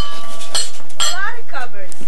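Pieces of microwave cookware clinking and knocking together as they are handled and fitted, with a short ringing tone after a clink near the start and two sharp knocks about half a second apart. A voice talks over the second half.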